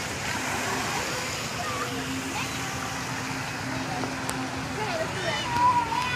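Distant children's voices calling and shouting over a steady hiss of splashing water. One voice rises louder near the end.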